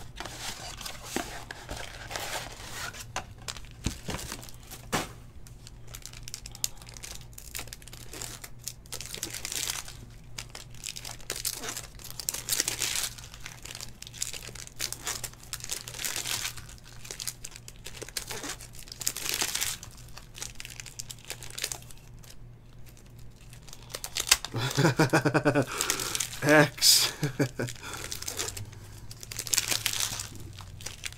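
Trading-card box packaging and foil pack wrappers being torn open and crinkled by hand, a series of short rustling, tearing bursts as packs are ripped and cards pulled out.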